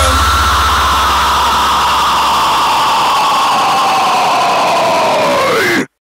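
Sustained distorted electric guitar noise closing a hard rock/metal song: a single tone slides slowly down in pitch, then near the end splits into one rising and one falling, and the sound cuts off suddenly.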